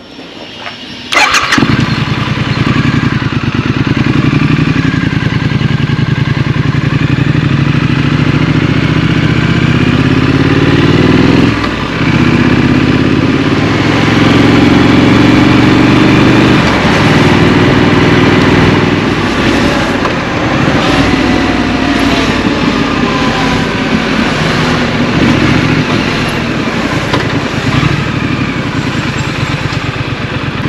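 A Triumph motorcycle's parallel-twin engine is started about a second in, catches and runs. It then pulls away and accelerates through the gears in rising surges, with a short drop in the revs between gears partway through, before running on at road speed.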